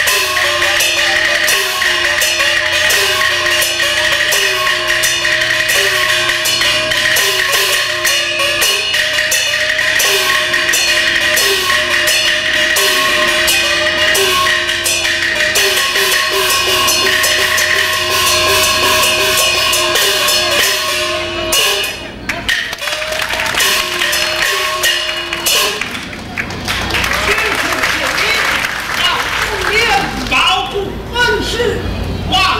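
Beijing opera accompaniment: a percussion band of drums, gongs and cymbals striking fast and steadily, under a short repeating melody with sliding notes. The music breaks off about three-quarters of the way through, and a noisy stretch follows.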